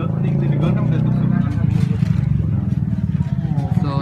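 An engine idling steadily close by, a low, rapid, even pulsing, with faint voices underneath.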